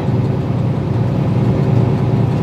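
Steady low rumble of tyres and engine heard inside a car's cabin while it drives along a highway.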